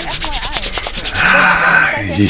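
Hands rubbed together briskly close to the microphone: a fast, scratchy rustle of skin on skin during the first second or so, under Dutch TV-show talk.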